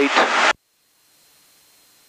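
A man's voice over the aircraft intercom, cut off about half a second in. After that there is near silence with a faint hiss and a thin steady high tone, and no engine sound.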